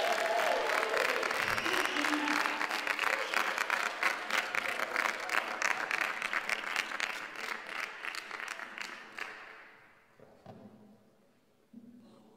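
Audience applauding at the end of a song. The clapping is strong at once, then thins and fades out about ten seconds in.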